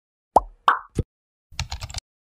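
Animation sound effects: three short pitched pops in quick succession, then, about a second and a half in, a rapid run of keyboard-typing clicks as a web address is typed into a search bar.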